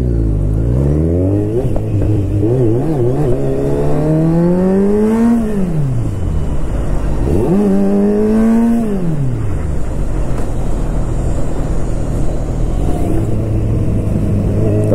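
Kawasaki Z1000's inline-four engine accelerating through the gears: the pitch climbs for about five seconds, falls at an upshift, climbs again briefly, falls at a second upshift, then settles into a steady lower cruise.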